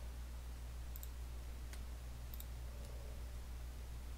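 A few computer mouse clicks, some in quick pairs, as contours are selected in CAM software, over a steady low electrical hum.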